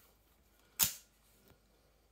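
Metal peel-off lid of a plastic food pot snapping free of the rim: one sharp click a little under a second in, then a faint tick.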